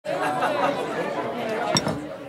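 Several people talking over one another in indistinct chatter, with a single sharp clink near the end.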